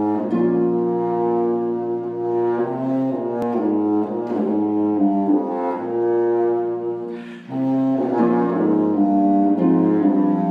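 A contraforte, a modern contrabassoon, plays a slow, sustained low melody with harp accompaniment, pausing briefly about seven seconds in before the phrase resumes.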